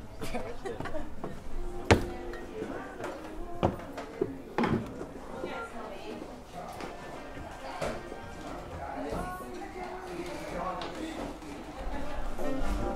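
Background voices of several people talking, with music playing, in a lived-in room. A sharp knock about two seconds in is the loudest sound, followed by a few softer knocks.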